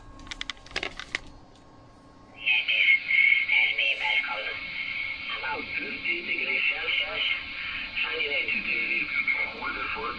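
Trio JR-500S valve shortwave receiver heard through its speaker as it is tuned: a few sharp clicks and crackles in the first second, then, after a short lull, a station comes in as a loud hiss with a faint voice underneath.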